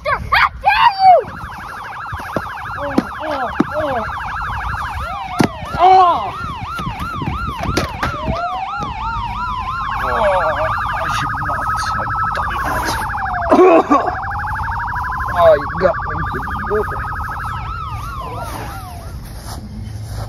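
Electronic emergency-vehicle siren switching between a fast trill, a yelp of about four cycles a second, and a slow wail that rises, falls and rises again. A voice cries out over it several times, and there is a sharp knock about five and a half seconds in.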